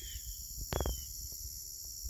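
Crickets singing in a steady, high-pitched chorus, with two short falling chirps and a brief soft knock just before a second in, over a low rumble of wind on the microphone.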